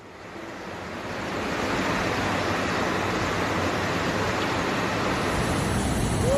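Heavy storm rain and wind outside a window: a steady rushing noise that swells in over the first two seconds and then holds.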